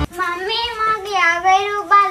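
A child singing a few long, wavering held notes with no accompaniment.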